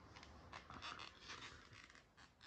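Faint scuffling and breathing from two dogs, a Keeshond and a Boston terrier, tugging at a plush toy, in a few short scratchy bursts in the middle.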